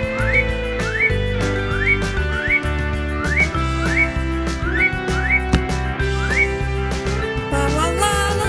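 Upbeat cartoon background music with a steady bass pulse, over which a whistle-like tone swoops upward in short glides, nine times, mostly in pairs. A new shimmering passage comes in near the end.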